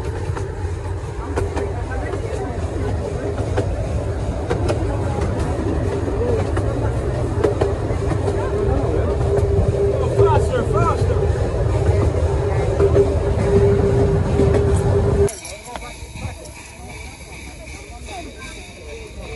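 Miniature railway train running along the track, heard from its open carriage: a steady rumble of wheels on rails, with a steady high squeal joining about seven seconds in. The sound cuts off sharply about fifteen seconds in.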